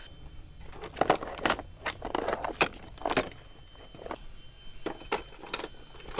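Metal hand tools clattering and clinking as they are rummaged through and handled, in a string of irregular knocks and clinks.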